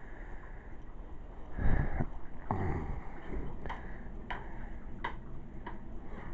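A refrigerator door is pulled open with a couple of soft thumps and rustling. Then come several light, irregular clicks over a faint steady low hum.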